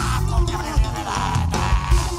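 Live art-rock band playing: a kick drum and bass keep a steady beat, about two hits a second, under held melody lines.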